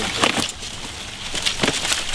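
Footsteps pushing through dry brush and dead leaf litter, with twigs crackling and snapping at irregular moments.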